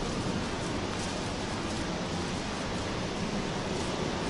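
Steady, even rushing background noise in a large underground passage, with no distinct events.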